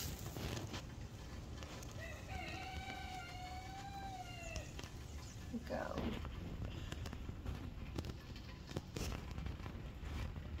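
A rooster crows once: a single long call lasting close to three seconds, starting about two seconds in. A short rising call follows about six seconds in.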